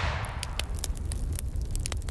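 Explosion-and-fire sound effect from a logo sting: a steady low rumble with scattered crackles and pops.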